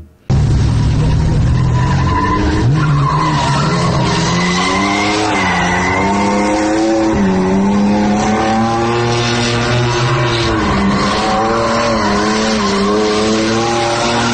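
Cars drifting: engines revving, their pitch rising and falling over and over, with tyres squealing and skidding on the asphalt.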